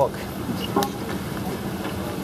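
Steady background noise, with a short snatch of a voice and one light click near the middle.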